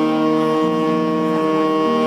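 Jazz saxophone holding one long steady note while a lower instrument moves between notes beneath it.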